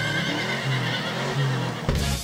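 A horse whinnying, a sound effect laid in as a pun on the car's horsepower, with a low stepping bass line beneath it; music takes over near the end.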